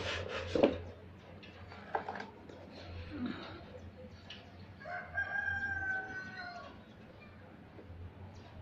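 Knocks and handling noise from the angle grinder and its cardboard box being picked up and moved, loudest in the first second. About five seconds in comes one long, pitched animal call lasting nearly two seconds.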